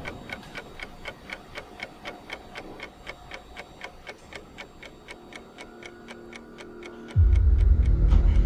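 A clock ticking evenly, about three ticks a second. About seven seconds in, a loud low drone of dark music comes in.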